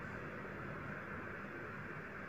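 Steady hiss with a faint low hum underneath: the background noise of the recording, with no other sound.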